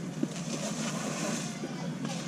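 Steady background noise of a large, busy store, with a small knock about a quarter second in.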